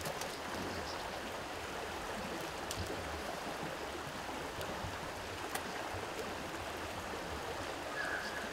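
Steady outdoor background hiss with no voices, broken only by a few faint ticks.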